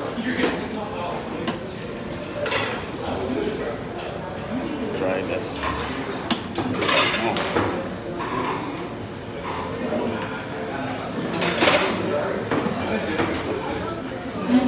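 Busy restaurant room sound: indistinct voices of other people and the clatter of dishes and serving utensils, with a few sharper knocks of crockery or metal.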